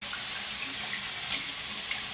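Bathroom tap running into the sink in a steady stream while she splashes water onto her face with her hands to rinse it.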